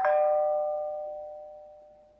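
A two-note ding-dong chime sound effect, a higher note followed at once by a lower one, ringing out and fading away over about two seconds. It is the bell-notification sound of an animated subscribe end screen.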